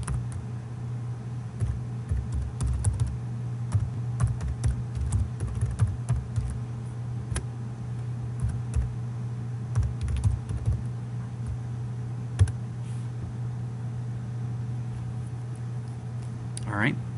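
Typing on a computer keyboard in quick bursts of key clicks through the first eleven seconds. A single louder click follows about twelve seconds in. A steady low hum runs underneath.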